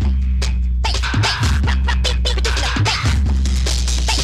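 Early-1990s UK hardcore rave track playing in a live DJ mix: fast breakbeat drums over a sustained deep bass.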